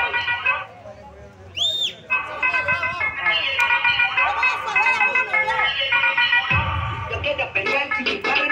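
Upbeat dance music with sung vocals, playing loudly from a loudspeaker. Near the start it cuts out for about a second and a half. During the gap a short high tone rises and falls, like a whistle, and then the music comes back in.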